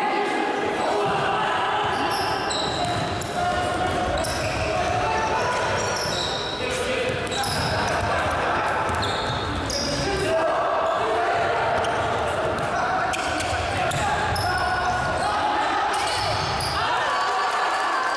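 Indoor futsal play in an echoing sports hall: ball kicks and bounces on the wooden court, many short high shoe squeaks, and players shouting.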